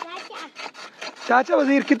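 A block of ice scraped back and forth over the blade of a wooden hand ice-shaver box, shaving ice for gola: quick, rasping strokes, several a second.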